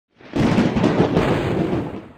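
Logo intro sound effect: a loud burst of low, rushing noise that swells in quickly just after the start, holds steady, and begins to fade near the end.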